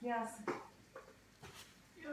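A voice speaking briefly at the start, then a couple of faint clicks.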